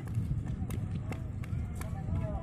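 Wind rumbling on the microphone, with snatches of people's voices and a few sharp clicks.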